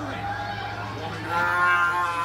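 A drawn-out vocal call starting a little past halfway, held on nearly one pitch for most of a second, over a steady low hum.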